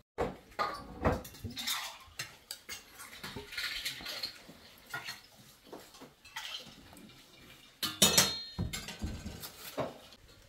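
Metal serving tongs and plates clinking and clattering as food is served onto plates, with scattered clicks throughout and the loudest clatter about eight seconds in.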